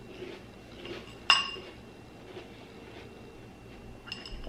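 A spoon clinks once against a ceramic bowl about a second in, leaving a short ringing tone.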